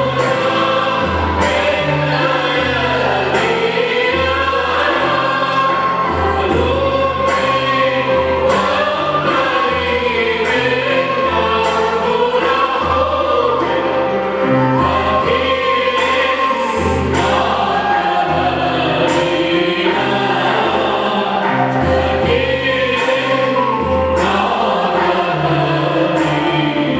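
Choir singing with keyboard accompaniment, the voices carried over sustained low chords that change every second or two.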